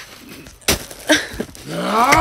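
A single sharp smack about two-thirds of a second in, then a short vocal sound, with a rising shout starting near the end.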